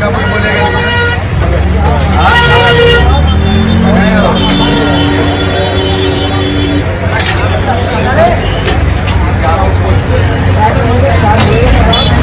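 Busy street bustle: crowd chatter with vehicle horns honking several times, the longest held for about two seconds, over a steady low hum.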